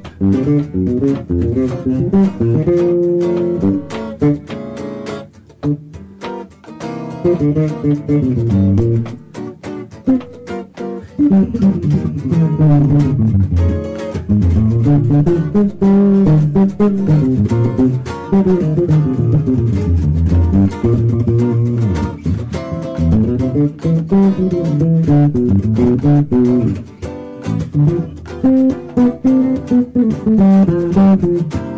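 Jazz duo of electric guitar and electric bass playing, the bass walking through a moving low line under the guitar's notes. The playing thins out about five seconds in and builds back to full about eleven seconds in.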